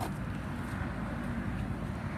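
Steady low rumble of vehicle noise.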